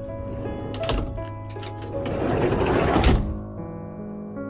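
Background music, over a 1971 VW Bay Window bus sliding door being rolled shut along its track: a rattle building for about a second that ends in a slam about three seconds in.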